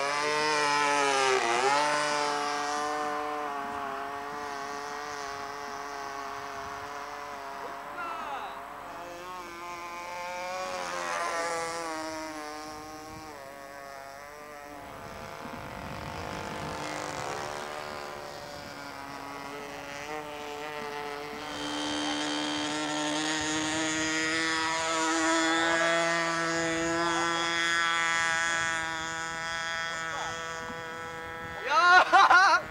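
Radio-controlled model airplane's small engine running at high revs as the plane is hand-launched and flies off, its pitch bending up and down with the passes. Loudest near the start, fading through the middle and louder again in the last third.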